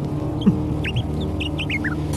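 Small birds chirping in quick, short, falling calls over a steady low musical drone, with a brief low thud about half a second in.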